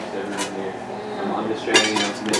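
Metal cookware and utensils clinking in a kitchen: two sharp clinks, one about half a second in and one near the end, over low voices.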